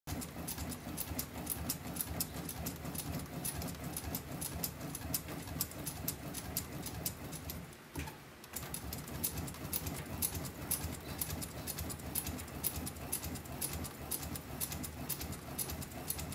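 DeMarini Vanilla Gorilla composite softball bat being rolled back and forth by hand between the rollers of a bat-rolling press to break it in: a steady low rumble with many sharp clicks. The sound pauses briefly about halfway through.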